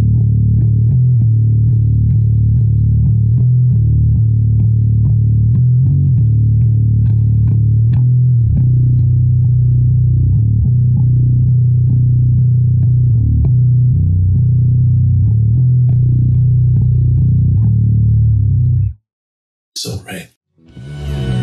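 Fender Precision Bass in drop B tuning, played unaccompanied with a pick: a steady half-time riff of repeated notes on the open low string with short fretted figures, played through without a break. It stops abruptly about a second before the end.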